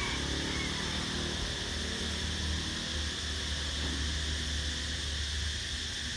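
Outdoor background noise: a steady low rumble with an even high hiss over it, and no distinct event.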